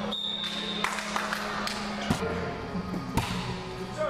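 Indoor volleyball play in a large echoing hall: a string of sharp slaps and thuds of the ball being hit and landing, the loudest about two and three seconds in. In the first second a short high steady tone sounds.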